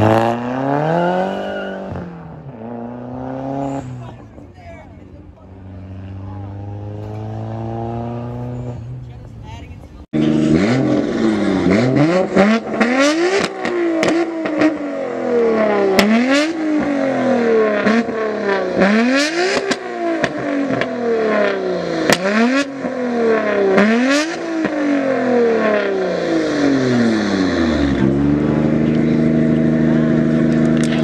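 A lowered Mk4 Volkswagen Jetta's engine revs and pulls away, its pitch falling and then rising as it fades. After a sudden cut about a third of the way in, a Nissan Skyline R32's engine is revved hard again and again, about one sharp rev every second and a half, with loud pops and bangs between the revs. It settles back to a steady idle near the end.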